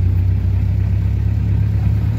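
Tractor diesel engine running steadily under way, a low, even drone.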